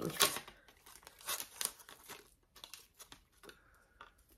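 Handling noise of a thin wooden mermaid cutout on a twine hanger: light crinkling and rustling, a scatter of small crackles that thins out after about three and a half seconds.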